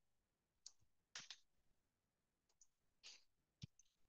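Near silence with about five faint, scattered clicks from a computer mouse and keyboard being used.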